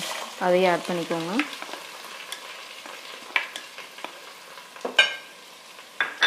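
Diced vegetables sizzling in a stainless-steel pot while being stirred, with scattered scraping clicks and one sharp metallic clink about five seconds in.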